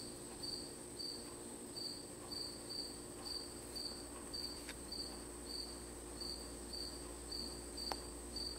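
A cricket chirping faintly and steadily, about two short high chirps a second, over a faint steady high-pitched hum.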